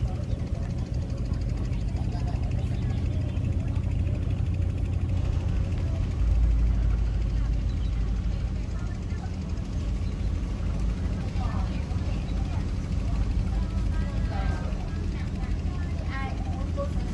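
Boat engine running with a steady low drone, heard from on board, louder for a moment about six seconds in.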